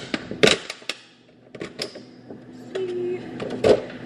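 Clear plastic lid being pried off a foil pan, crackling and snapping in a series of sharp clicks, the loudest near the end.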